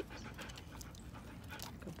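A husky panting softly close by, with a few faint mouth clicks.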